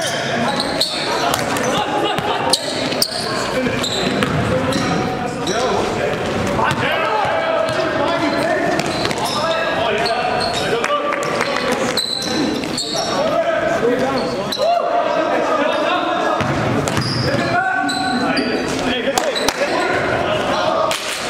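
Basketball game in a gym: a ball bouncing on the floor, short knocks, and players' voices calling out, all echoing in the large hall.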